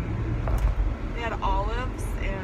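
Steady low rumble of a car cabin on the road, with a woman's voice speaking briefly over it in the second half.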